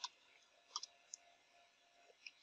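Faint clicks of computer keyboard keys: one sharp click at the start, then a quick pair and a single click around the middle, over a faint steady hum.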